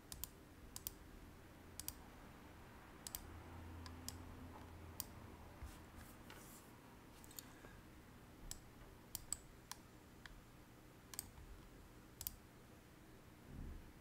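Faint, irregular clicks of a computer mouse and keyboard, a dozen or more scattered across the stretch, over quiet room tone.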